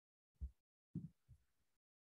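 Near silence broken by three short, faint, low thuds, at about half a second in and twice around one second in.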